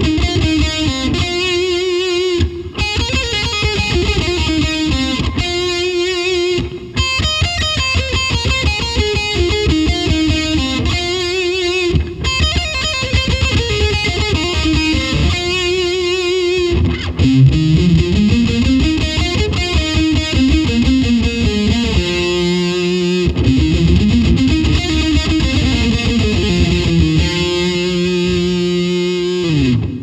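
Overdriven Stratocaster-style electric guitar playing fast lead licks from a compound pentatonic scale shape, two pentatonic patterns joined into one. Quick runs climb and fall, with phrases ending on held notes.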